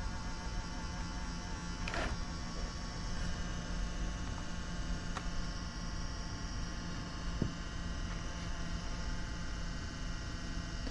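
An old laptop's drive whirring and buzzing steadily, with a few faint ticks. The owner first took the noise for a failing hard drive, then said it almost sounds like there might be a CD spinning in the optical drive.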